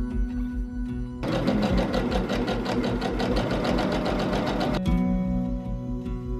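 Sewing machine stitching at a fast, even rate, starting about a second in and stopping abruptly after three and a half seconds, over background music.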